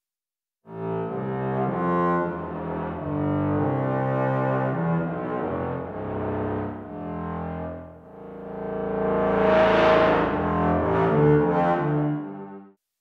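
Synthesized bowed-string patch in Surge XT (a modulated pulse wave through a lowpass filter) played expressively as a low, sustained melody, with its body EQ boost moved down to a double bass's resonance. The notes step from pitch to pitch and dip briefly about eight seconds in, then a louder, brighter phrase follows.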